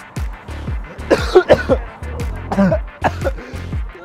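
Background music with a steady beat, over a person coughing several times from the burn of very hot ghost-pepper chicken.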